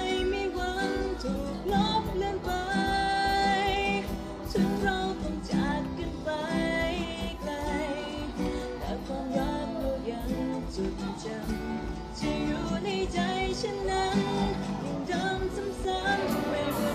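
Live band music with singing over a steady beat, with electric guitar and keyboard.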